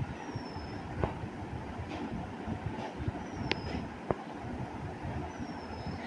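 Low, irregular background rumble with a few faint clicks and three short, high, falling chirps spread a couple of seconds apart.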